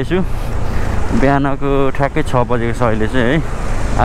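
Steady low rumble of a motorcycle on the move, its engine and road noise mixed with wind on the microphone. A voice talks over it from about a second in until shortly before the end.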